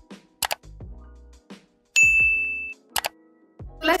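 Subscribe-button animation sound effects over short bursts of music: two mouse clicks, then a bright bell ding about two seconds in that rings for under a second, then two more clicks.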